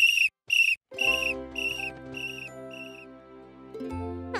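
Cartoon sports whistle blown in a run of short toots, about two a second, each fainter than the last until they die away. Soft background music comes in underneath about a second in.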